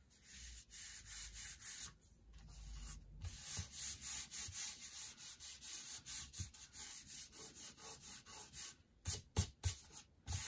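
Hands rubbing a glued sheet-music page flat onto a paper envelope, pressing it down so the glue takes: dry swishing of palms over paper, about three strokes a second, with a few quicker, sharper swipes near the end.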